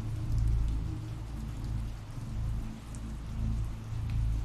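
Steady rain ambience, with scattered drops pattering over a deep low rumble that swells and fades.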